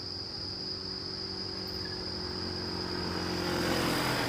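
Street traffic: a low engine hum under a steady high-pitched insect drone. The engine noise grows louder near the end as a motorcycle comes close.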